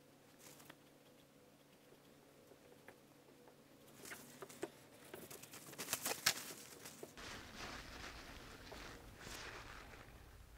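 Faint handling noise from oil painting: a cluster of small clicks and taps of a brush and painting tools, loudest about six seconds in, followed by a soft scrubbing rustle.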